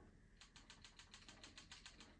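Near silence: room tone, with a faint rapid ticking of about ten ticks a second starting about half a second in.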